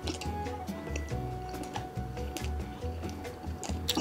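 Background music: held melody notes over a pulsing bass line, with light ticking percussion.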